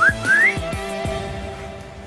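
Background music with a whistle-like sound effect at the start: two quick rising glides. These are followed by held notes and a soft low beat, fading slightly toward the end.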